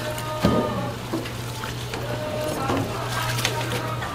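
Battered food frying in a deep fryer of oil, with sharp clinks of a metal wire skimmer and tongs over a steady low hum.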